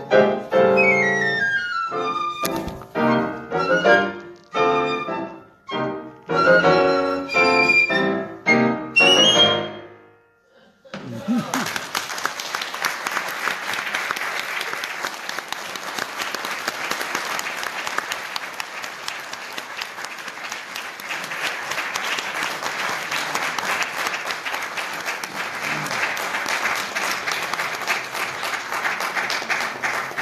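Live chamber music: piano under a solo melody line plays a closing phrase that ends about ten seconds in. After a short pause, audience applause fills the rest.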